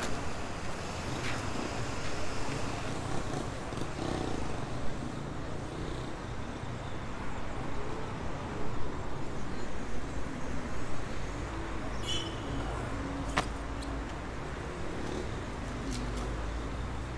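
Steady city road traffic passing close by, a low continuous rumble that grows heavier near the end, with a few short sharp clicks.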